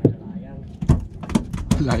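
A sharp knock right at the start, then a quick run of short knocks and clicks, with a man calling out near the end.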